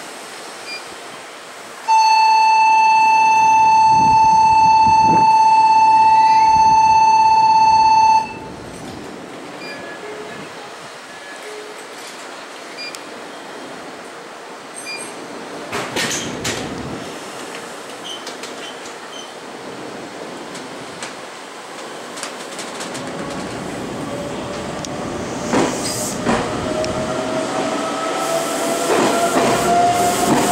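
A loud, steady single-pitched departure buzzer sounds for about six seconds at the platform. Later the Meitetsu 3700 series electric train starts off, its traction motors giving a slowly rising whine that grows louder toward the end.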